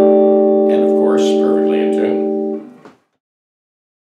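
A chord on a freshly refretted 1966 Fender Telecaster electric guitar rings out steadily and slowly dies away. It is cut off short about three seconds in.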